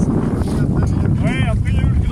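Strong wind buffeting the microphone, a steady low rumble, with a voice calling out briefly a little after the first second.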